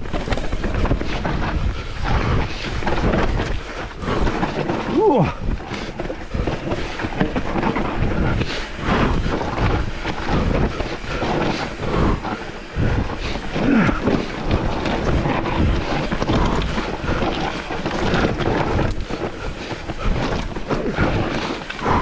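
Mountain bike descending a rough dirt and stone trail: tyres rolling and scrabbling over the ground, with constant knocks and rattles from the frame, chain and suspension over bumps. Wind buffets the camera microphone throughout.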